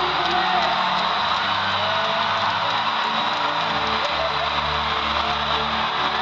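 Live concert music: a guitar plays under a loud, steady crowd din of cheering and voices, recorded from within an arena audience.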